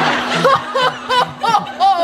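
A woman's exaggerated stage cries: a string of short, pitched 'ah' sounds about a third of a second apart, the last drawn out into a falling wail.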